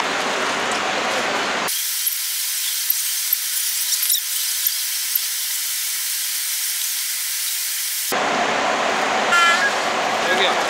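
Checkout-lane store noise: a steady din of the busy hall. About two seconds in, it switches abruptly to a thin, bright hiss with no low end and a few faint clicks. About six seconds later that cuts off, the store noise returns, and there is a short pitched chirp near the end.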